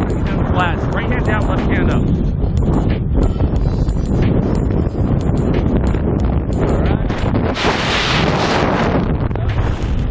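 Freefall wind rushing over the camera microphone during a tandem skydive, a loud, steady buffeting rumble, with a brief louder surge about eight seconds in.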